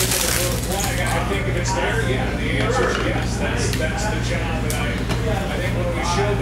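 A foil trading-card pack wrapper crinkling as it is torn open, stopping just after the start, then a few light clicks and taps of cards being handled. Background talk and a steady low hum run underneath.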